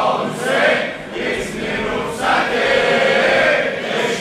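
A large crowd of men chanting a Muharram mourning chant in unison, in long rising and falling phrases.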